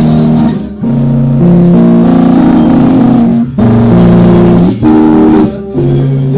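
Live band playing a slow ballad led by guitar, with held chords that change every second or so and a few short breaks between phrases. The live recording is loud and distorted.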